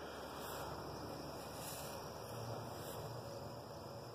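Faint, steady outdoor background hiss with no distinct events; the propane cannon does not fire.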